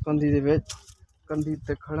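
A man talking in two short phrases with a brief pause between them, and a short hiss-like noise just after the first phrase.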